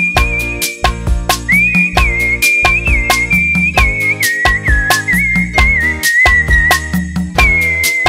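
Mouth-whistled melody of a Tamil film song, leading with ornamented slides and turns over a band backing of drums and bass with a steady beat. The whistle drops out for about half a second near the start, then comes back in with an upward slide.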